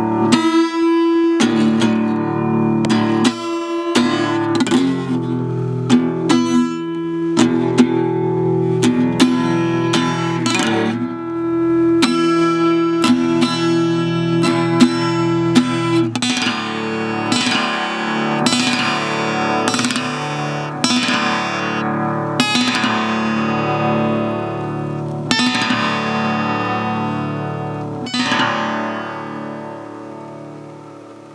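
Guitars playing an instrumental passage: picked and strummed notes ringing over held low notes, fading down over the last couple of seconds.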